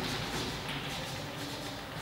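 Chalk writing on a blackboard: a string of short, faint scratching and tapping strokes.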